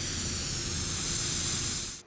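Steady, loud spray-like hiss from a logo intro sound effect, over a low rumble and a faint steady hum, cutting off suddenly at the end.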